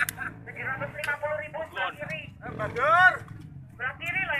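Men talking and calling out among a group of bystanders, over a low steady background rumble.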